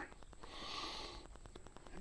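A faint, short breath through the nose about half a second in, over faint scattered ticks of footsteps on dry leaf litter.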